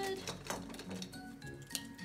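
Soft background music with steady held notes, with a few sharp clicks as markers are rummaged in a desk cup to swap a marker that is not working well.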